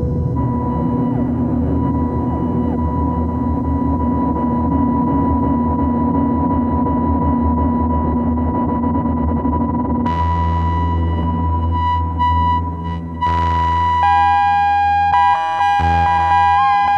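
Ciat-Lonbarde Tetrax analog synthesizer played through a Chase Bliss Mood Mk II looper and effects pedal: a dense ambient drone of steady held tones over a low rumble. About ten seconds in the texture shifts to a heavier low drone with broken, stepping tones, and near the end a new sustained tone comes in.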